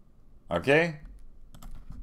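Several quick, light clicks at a computer in the second half, as the screen is switched to another page.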